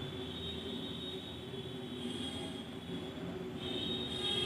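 A steady mechanical hum with a faint high-pitched whine over it, from an unseen machine such as a fan or motor. There are no distinct knocks or clicks.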